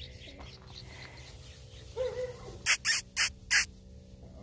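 A bunch of long fresh grass shaken close to the microphone: four quick, loud rustling swishes in about a second, near the end.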